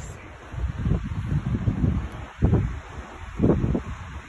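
Wind buffeting a phone microphone: an uneven low rumble in gusts, with two stronger gusts in the second half.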